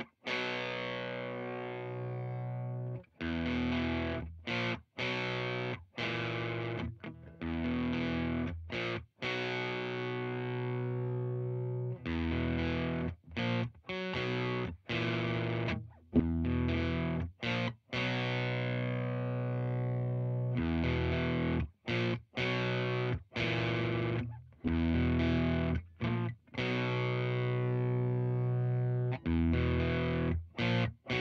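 Electric guitar through an Arion Metal Master SMM-1 distortion pedal (an HM-2 clone) into a valve amp, at moderate gain, with the pedal's low EQ turned to full cut. It plays a repeated riff of distorted chords that ring for a second or two and are cut short by abrupt stops.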